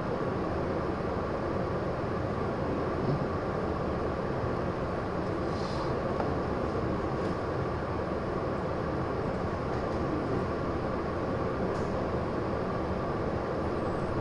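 Steady background noise with a faint hum, unchanging throughout, with no distinct events.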